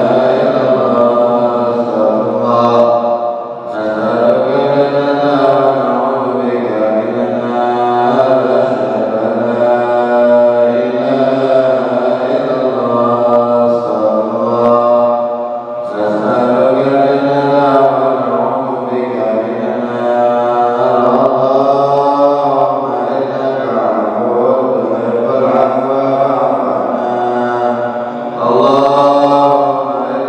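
A man chanting a prayer into a microphone in long, sustained melodic phrases, with brief pauses for breath between phrases.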